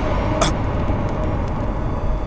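A steady low rumble with a faint hiss over it, the kind of dramatic background drone laid under a TV serial scene. A short click comes about half a second in.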